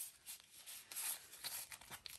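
Faint crinkling and rustling of a handful of Australian polymer banknotes as they are handled and flipped through, in short scattered bursts.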